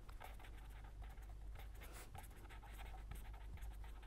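Pen writing on paper: faint, quick scratching strokes as a word is written, over a low steady hum.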